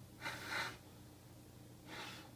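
Short puffs of breath blown out by a man to blow dust off a trading card: two quick puffs in the first second, then another near the end.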